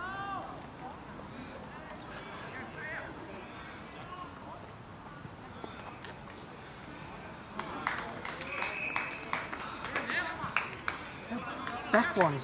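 Faint distant voices calling across an outdoor football ground. From about eight seconds in, a run of sharp clicks and knocks close to the microphone, with a brief steady high tone among them.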